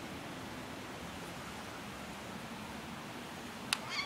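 Steady outdoor background hiss, with one sharp click shortly before the end and a fainter one just after it.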